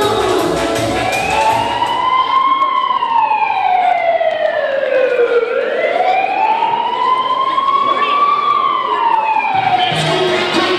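A siren sound effect played as part of the dance music: a wailing tone slowly rising and falling twice. The beat drops out behind it and comes back near the end.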